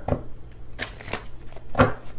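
A tarot deck being shuffled by hand: about four short, brisk strokes of cards sliding against each other.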